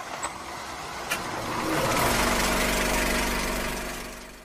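Intro sound effect: a rush of noise that swells to a peak around the middle and then fades away, with two clicks in the first second and a low steady hum underneath from about halfway.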